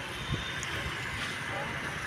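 Steady outdoor background noise: a low rumble with faint distant voices, and no clear engine note or sudden sound.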